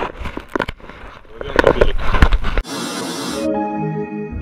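Wind and water noise on an open raft with irregular knocks and handling bumps, the loudest a little after the middle, then a sudden cut to a brief rushing whoosh and calm ambient music with held bell-like tones.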